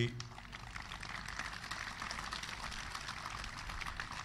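Audience applauding: many hands clapping in a steady patter that begins as the speech breaks off.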